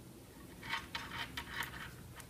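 Faint rustling and scratching of yarn being drawn through with a crochet hook, in a few soft, brief strokes from about half a second in.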